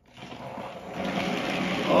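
Small electric motors of battery-powered Thomas & Friends toy trains whirring as they run along during a race, the sound rising steadily in level over the two seconds.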